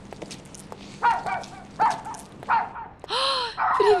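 A dog barking: three short barks about a second apart, then a louder, longer yelp with a rising-and-falling pitch near the end.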